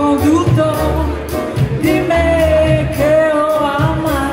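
A woman singing a slow melody with long, bending notes, backed by a live band of guitar, upright double bass and drums with cymbal strokes, recorded on a phone from within the audience.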